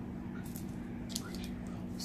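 Soft handling noise of satin and glitter ribbon strips and a cloth tape measure, with a few light clicks and rustles about half a second and a second in, over a steady low hum.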